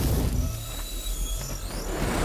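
Trailer sound design: a low rumbling drone under a grainy, scraping noise, with faint thin whistling tones high above.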